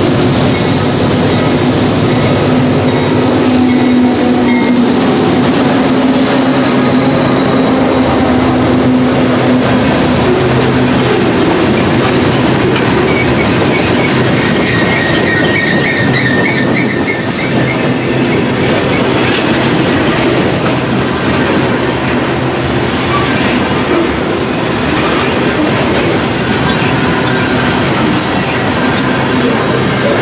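Union Pacific diesel locomotives pass close by with their engines droning, then a long freight train of boxcars and tank cars rolls past, its steel wheels running on the rails. A brief high squeal from the wheels comes about halfway through.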